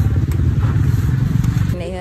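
A motorcycle engine running close by: a low rumble with a quick, even pulse, with faint voices over it. It cuts off suddenly near the end, where a voice takes over.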